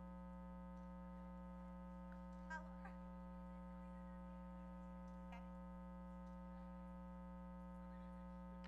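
Faint, steady electrical hum made of several unchanging tones, close to near silence, with a brief faint sound about two and a half seconds in.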